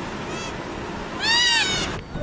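Wildlife calls from a coastal animal colony: three short bleating calls that rise and fall in pitch, the last and loudest one near the end, over a steady background hiss.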